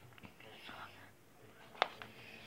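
Soft whispering close to the microphone, with a single sharp tap near the end from a fingertip handling a tablet.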